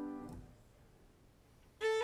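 Classical violin music: a held note fades away in the first half second and a short pause follows. Near the end the violin comes back in with a quick run of notes climbing upward.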